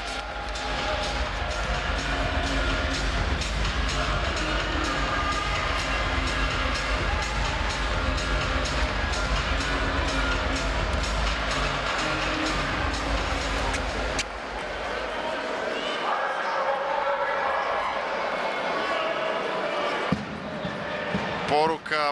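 Loud rhythmic music with a steady beat over arena crowd noise in an indoor sports hall. It stops suddenly about fourteen seconds in, leaving quieter crowd noise and scattered voices.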